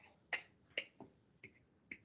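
A few faint, sharp clicks, about five spread unevenly over two seconds, with near silence between them.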